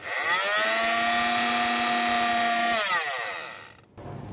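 Oscillating multi-tool with a plunge-cut blade switched on and run unloaded on its lowest speed setting: a whine that rises as it starts, holds steady for about two and a half seconds, then falls away as it is switched off and winds down.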